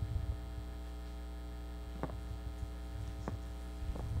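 Steady electrical mains hum from the hall's sound system, with two faint clicks, one about two seconds in and one a little past three seconds.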